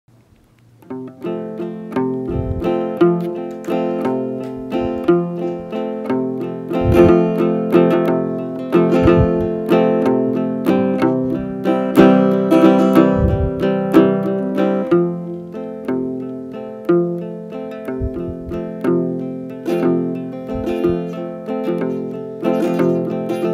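Acoustic guitar playing an instrumental introduction, picked and strummed chords in a steady rhythm with bass notes every few seconds. It starts about a second in.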